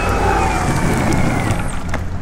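Single-motor electric longboard rolling past close by on asphalt: a loud steady rush of wheel noise with a faint motor whine that slides down in pitch as it goes by.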